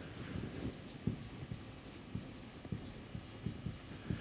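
Marker pen writing on a whiteboard: a faint run of short squeaky strokes and light taps as a word is written out.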